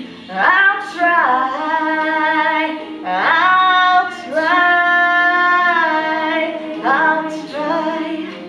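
A young woman singing long held notes, sliding up into each one, over an instrumental backing track; the longest note is held about two seconds, a little past the middle.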